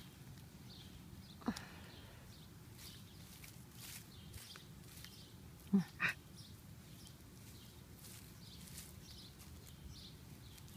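Shiba Inu sniffing and nosing through garden mulch for its buried bone, a faint run of short rustles and sniffs. Two short low vocal sounds come close together about six seconds in.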